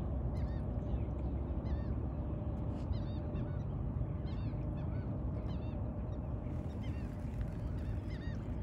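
A flock of birds calling over and over, short arching calls several a second, over a steady low rumble.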